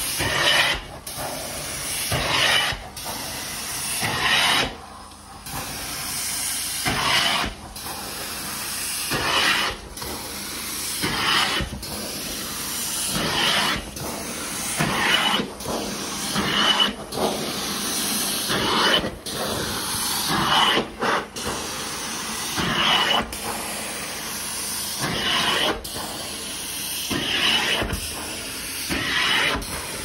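Carpet-extraction stair tool spraying and sucking across carpeted stair treads: a rushing hiss of suction that swells with each stroke and breaks briefly as the tool lifts, about one stroke every two seconds.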